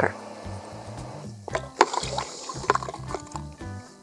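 A metal spoon stirring sugar into water and dish detergent in a plastic bucket, with sloshing and a few sharp clicks of the spoon against the bucket about one and a half to two seconds in, over soft background music.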